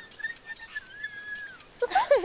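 Faint, thin, wavering squeaky whistle from a small puppet creature, gliding down in pitch near the end, followed by a louder burst of quick high squeaks and chirps just at the close.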